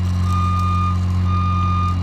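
Work-platform lift's motion alarm beeping about once a second, each beep a little over half a second long, over a steady low hum from the lift's power unit.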